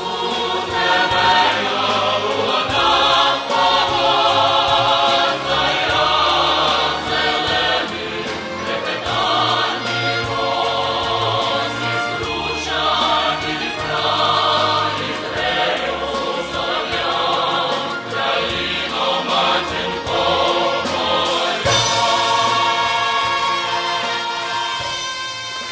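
A women's folk choir singing a song, amplified through stage loudspeakers, over an instrumental backing with a steady bass line.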